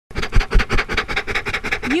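A scratchy intro sound effect: a fast, even run of short strokes, about eight a second, with two heavier low thumps in the first half second.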